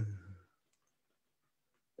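A few faint, scattered clicks from a computer mouse advancing a slideshow, after a drawn-out spoken word trails off.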